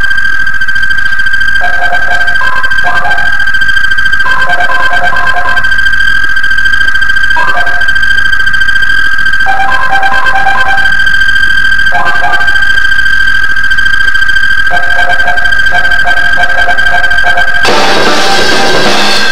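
Electronic synthesizer music: a loud, steady high tone is held throughout, while short figures of lower notes come and go every second or two. No drums are struck.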